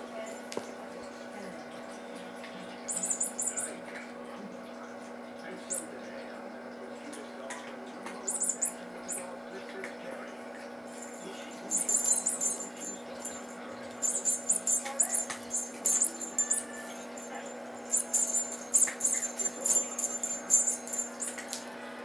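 A feather wand cat toy shaken and batted by kittens gives bursts of high rustling and jingling, first about three seconds in and more often in the second half, over a steady low hum.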